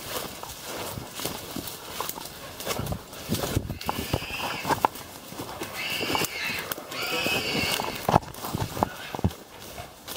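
Someone running through dense bush: footfalls and twigs and branches snapping and brushing past. A few high, drawn-out animal cries come from ahead, about four and six seconds in, from where the dogs have a boar bailed up.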